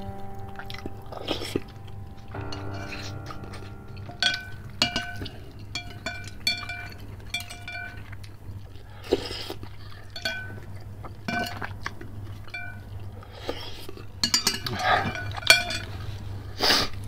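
Eating noodle soup: noodles and broth slurped, with chewing, and chopsticks and a metal spoon clicking against a glass bowl. Background music with a short repeating melody plays underneath.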